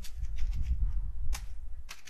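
Computer keyboard keystrokes: a few separate sharp clicks, the loudest two in the second half, over a low steady rumble.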